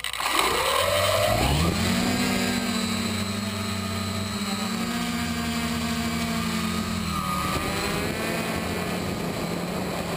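Multirotor drone's electric motors and propellers spinning up, rising in pitch over the first two seconds, then holding a steady hum in flight.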